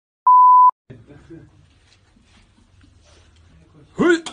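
A single steady electronic beep tone, about half a second long, starts a fraction of a second in. Faint room noise follows, with a sudden sharp sound at the very end.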